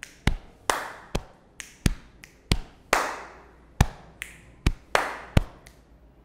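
Solo body percussion: a rhythmic run of about fifteen sharp hand strikes (claps, snaps and taps on the body), a few of them trailing into a short hiss. The strikes stop shortly before speech resumes.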